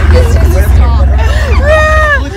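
Two women laughing and exclaiming, with a long held cry near the end, over a heavy low rumble.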